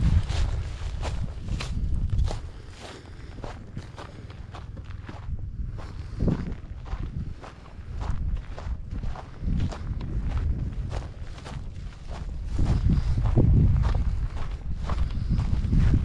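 Footsteps crunching over dry grass and dirt, at an uneven walking pace, over a low rumble that swells louder near the end.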